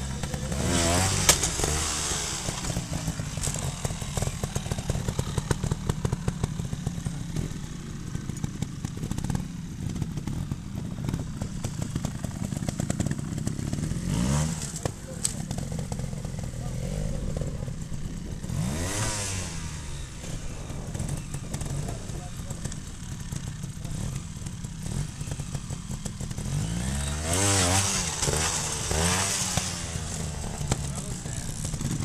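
Trials motorcycle engines ticking over with a steady low rumble. Short throttle blips rise sharply in pitch several times: about a second in, twice in the middle, and again, loudest, near the end.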